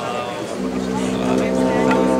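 Crowd voices, then a steady, low held tone with many overtones starts about half a second in and holds, rich and horn-like.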